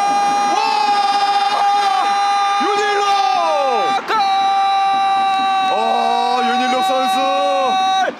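A sports commentator's long goal shout held at one high, steady pitch, broken by a single breath about four seconds in and then held again, with a second voice rising and falling beneath it near the end.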